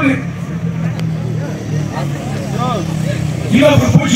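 A man speaking Tamil, quieter in the middle and louder again near the end, over a vehicle engine running steadily in the background.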